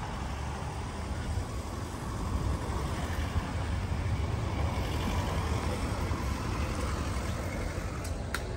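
Steady low rumble of an Audi SUV's engine running at idle close by, a little louder from about two seconds in.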